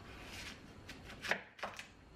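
Kitchen knife cutting through a daikon radish on an end-grain wooden cutting board: a soft slicing swish, then two sharp knocks of the blade reaching the board a little past halfway.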